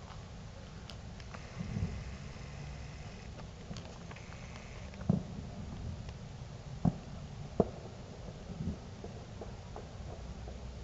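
Distant fireworks going off now and then, about five separate bangs: dull booms and a couple of sharper pops, over a steady background hum.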